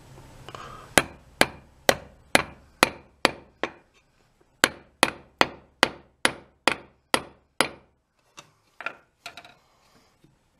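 Hammer blows driving a small hickory wedge into the eye of a loose steel ball peen hammer head. There is a run of sharp strikes about two a second, a brief pause, a second run, then a few lighter taps near the end.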